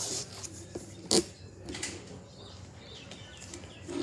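Handling noises from a card binder being taken up and opened: a few clicks and knocks, with one sharp tap about a second in.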